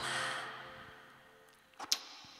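The last chord of a live keyboard, guitar and vocal performance stops, leaving a soft breathy hiss that fades away over about a second and a half. A short, sharp swish comes just before the end, as the outro title graphic appears.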